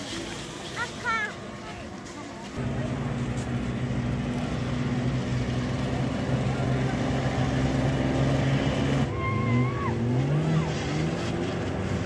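An engine starts up abruptly a few seconds in and runs at a steady pitch, then revs up in several short rising bursts near the end, over crowd voices.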